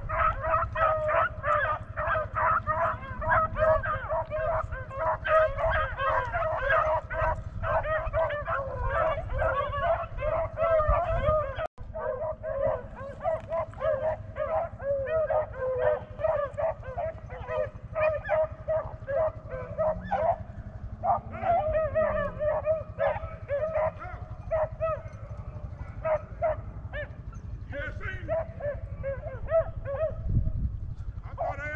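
A pack of beagles baying and yelping as they run a rabbit's track, many voices overlapping with hardly a break. The sound cuts out for an instant about twelve seconds in.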